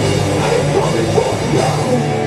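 Metallic hardcore band playing live, loud and dense: distorted electric guitars, bass and drum kit.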